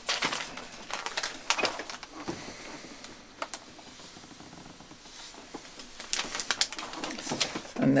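Light clicks and rustling of fabric strips, paper and scissors being handled on a sewing table, quieter in the middle.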